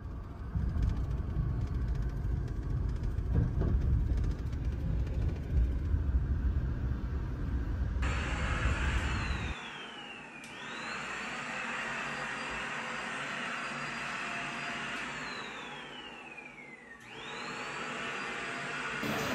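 Wind buffeting the microphone as a heavy, uneven low rumble for about the first half. Then a cordless stick vacuum runs with a steady high whine, being used to suck up a bug. Twice its motor slows with a falling pitch and then speeds back up.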